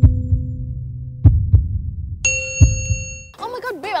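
Intro sound effect over the title card: a low hum with heavy thumps like heartbeats, one at the start, a quick pair just after a second and one more near three seconds. A bright bell-like ding about two seconds in, and a woman starts speaking near the end.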